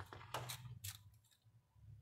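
A few short, faint clicks and rustles in the first second, then near silence over a steady low hum: handling noise from a handheld camera being moved around.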